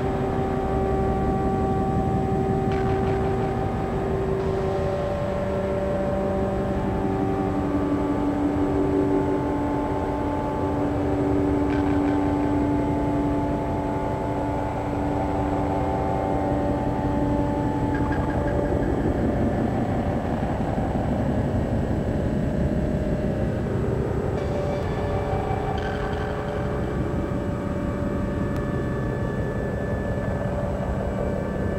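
Electroacoustic music: several long held tones that shift from one pitch to another every few seconds, over a dense, rumbling low drone.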